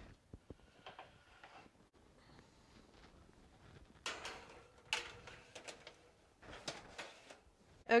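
Metal baking sheets of rolls slid onto oven racks, with sharp clanks and scrapes of pan on rack about four seconds in, again about a second later, and once more near the end.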